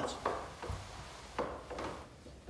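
A few light knocks and rubbing sounds of a person shifting round on a bench and settling at a piano, with a soft low thump a little under a second in and a sharper knock a little later.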